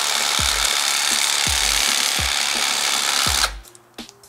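Electric fillet knife running as it cuts across a crappie behind the head, a steady buzz that cuts off suddenly near the end.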